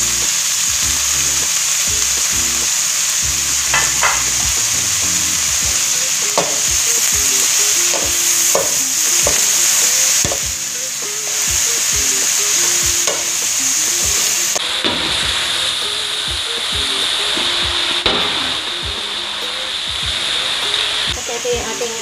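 Sliced cabbage and bean sprouts sizzling in a large metal wok while a wooden spatula tosses them, with frequent scrapes and knocks of the spatula against the pan over a steady hiss.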